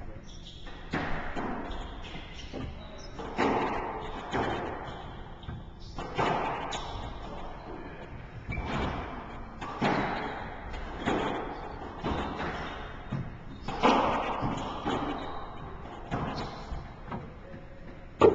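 A squash rally: the ball being struck by racquets and smacking off the court walls in an irregular run of sharp knocks, roughly one every second, each ringing briefly in the enclosed court.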